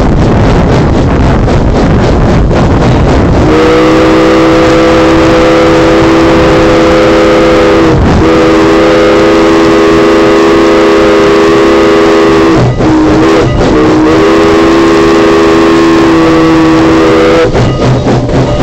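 Steam locomotive working with regular exhaust chuffs, then its chime whistle sounds a multi-note chord in the grade-crossing signal: long, long, short, long. The whistle starts about three seconds in and stops just before the end.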